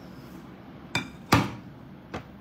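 Two sharp knocks of a hard object, the second louder with a brief ring, about half a second apart, around a second in.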